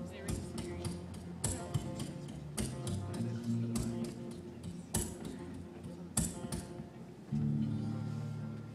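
Acoustic guitar playing slow strummed chords, each left to ring out, with a new low chord struck near the end.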